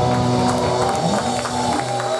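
Live rock band letting its closing chord ring: electric guitars, bass and keyboard holding long, steady notes as the song ends, with the drum beat stopped.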